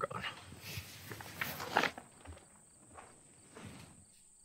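Footsteps: a quick run of several steps in the first two seconds, then a few slower, spaced-out ones.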